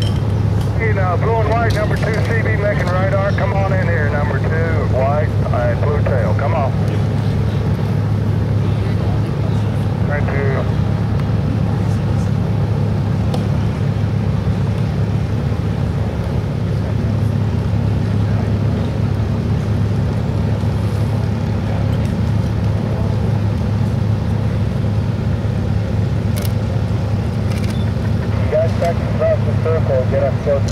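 A steady, unchanging engine drone throughout, with voices in the first few seconds, briefly about ten seconds in, and again near the end.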